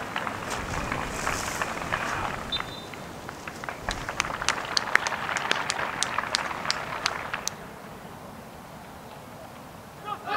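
Scattered applause from a small stadium crowd, with separate claps standing out from about three and a half seconds in and dying away after about seven and a half seconds, over open-air crowd noise.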